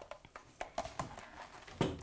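Faint, scattered light clicks and knocks, about half a dozen, as the switched-off electric hand mixer's beaters are worked out of stiff cookie dough in a glass bowl.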